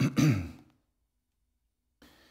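A man's voice for about half a second, then silence.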